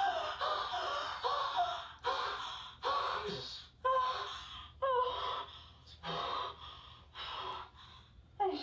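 A woman gasping and breathing hard, with a voice in each breath, in a string of short bursts about once a second that grow fainter near the end.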